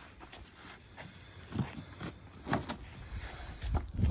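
Faint, scattered rustles and scrapes of cardboard packaging being handled and pulled away from a flat composite centerboard, a handful of short sounds spread over a few seconds.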